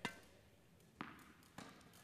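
Faint knocks of a tennis ball in play: a sharp tap as it is fed off a racket, a louder knock about a second later as it bounces on the court, then a softer hit as the player's racket strikes it back.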